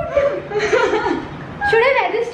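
A woman chuckling and laughing, mixed with a few indistinct spoken sounds.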